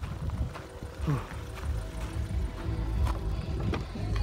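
Wind rumbling on the phone's microphone, uneven and low, with faint music underneath and a few light clicks.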